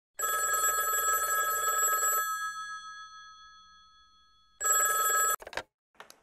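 A rotary-dial telephone's bell ringing: one ring of about two seconds whose tone dies away slowly, then a second ring cut short after under a second. A few clicks follow as the handset is lifted.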